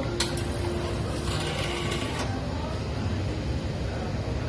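Steady mechanical hum of café equipment, with a sharp click just after the start and a short hiss from about a second and a quarter in, lasting about a second.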